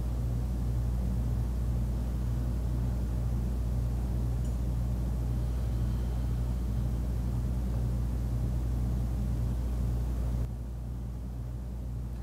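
Steady low hum of room noise with no other events, dropping slightly in level about ten seconds in.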